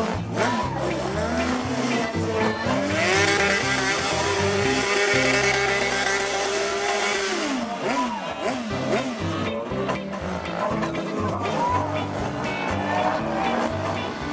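A sport motorcycle's engine revs up and holds high for about five seconds, then drops away, with a squeal from the rear tyre spinning on wet pavement. Music with a steady beat plays throughout.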